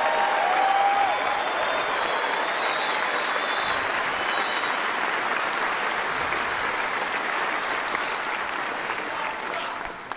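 A large audience applauding steadily, easing off slightly near the end.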